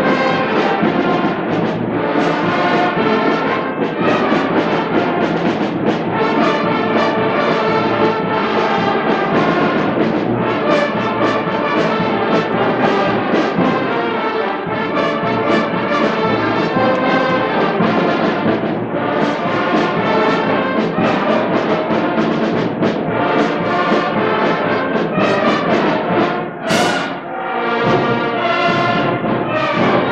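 A school concert band of flutes, clarinets, saxophones, brass and timpani playing live, with a short break in the music near the end.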